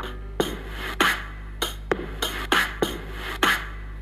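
Drum-kit beat of a cartoon children's song playing through a TV's speaker: a steady run of drum hits after the count-in, before the singing begins.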